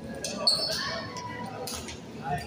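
Badminton play in an echoing indoor hall: a brief high squeak about half a second in and a sharp knock near the end, with players' voices.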